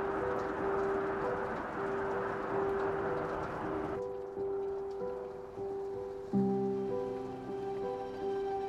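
Soft, slow background music of held tones. For the first half a steady rushing hiss sits under it and cuts off suddenly about four seconds in; deeper notes join the music near the end.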